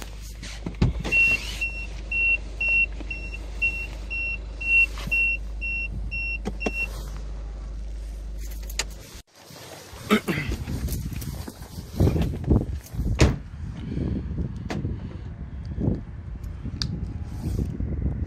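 A Peugeot 3008's dashboard warning chime beeping steadily about twice a second for several seconds over a low steady hum, which stops suddenly. It is followed by a run of irregular knocks, thumps and rustles.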